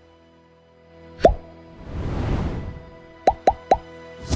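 Short cartoon pop sound effects, each dropping quickly in pitch, over faint background music: one pop about a second in, a swelling whoosh after it, then three quick pops in a row near the end.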